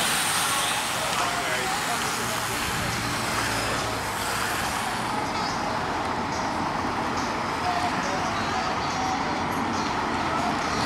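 Team support cars of a cycle race convoy driving past one after another, a steady road and engine noise, with the voices of roadside spectators.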